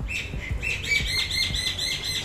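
A small bird chirping: a rapid run of short, high, evenly repeated notes, about six a second, beginning about half a second in.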